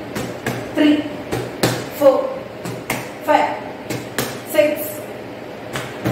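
Punches smacking a handheld focus mitt, about a dozen sharp hits at an uneven pace of roughly two a second. Short vocal calls come with several of the hits, about four in all.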